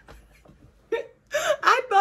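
A woman laughing: after a short quiet moment and a sharp catch of breath about a second in, her laughter breaks out in the second half.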